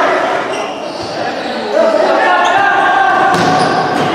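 Players' voices shouting and calling, echoing in an indoor sports hall, with the knock of a futsal ball on the wooden court a little past three seconds in.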